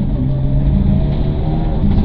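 Mitsubishi Lancer Evo IX rally car's turbocharged 2.0-litre four-cylinder engine running hard at a fairly steady pitch, heard from inside the cabin at speed on a stage.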